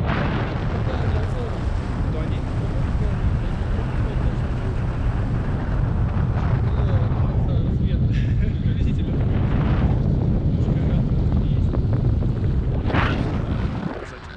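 Wind buffeting the action camera's microphone in paraglider flight: a steady, loud low rumble.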